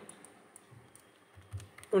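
A few faint keystrokes on a computer keyboard, scattered light clicks as numbers are typed into a field.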